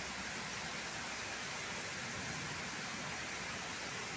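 Torrential thunderstorm rain falling in a steady, unbroken rush.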